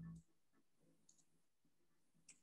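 Near silence, with a short faint sound right at the start and a faint click about a second in.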